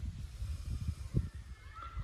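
Uneven low rumble of noise on the microphone, with a few soft low knocks. A faint, thin steady tone comes in near the end.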